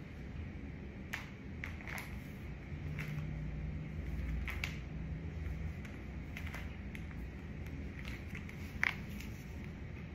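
Quiet room tone with a steady low hum, broken by a few faint clicks and soft taps from a person moving barefoot on a hardwood floor; one sharper click comes near the end.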